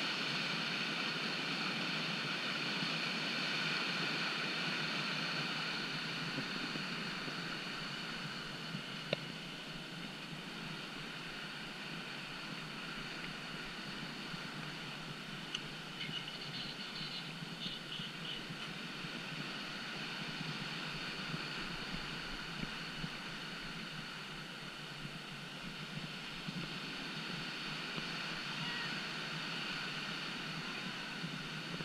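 Steady rush of churning whitewater rapids in a concrete whitewater channel, with a single sharp click about nine seconds in.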